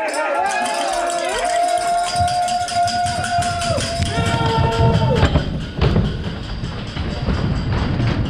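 Bobsleigh runners rumbling and rattling on the ice track as the sled gathers speed, growing louder from about two seconds in. Long held tones from voices or music lie over it and stop about five seconds in.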